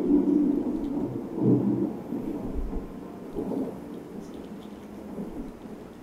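Low rolling thunder rumbling, loudest at the start and dying away over the first couple of seconds, with fainter swells after.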